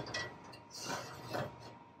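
A few light metallic clinks of a cast iron skillet being set down upside down on an oven's wire rack, with the rack rattling under it.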